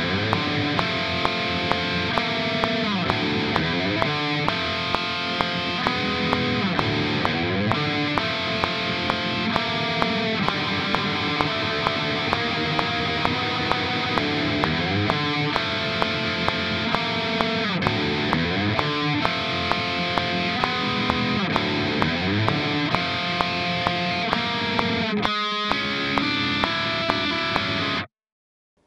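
Heavily distorted ESP LTD electric guitar playing a black-metal riff of minor chord shapes, the notes of each chord picked through, over a steady metronome click. About 25 seconds in the riff breaks off for a moment, then a last chord is played.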